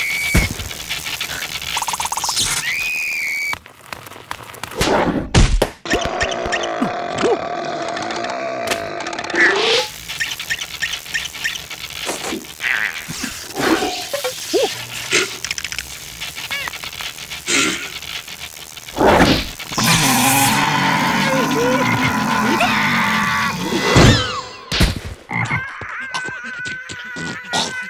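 Animated cartoon soundtrack: squeaky, wordless creature voices and yelps with comic sound effects, electric crackling and several sharp impacts, over background music.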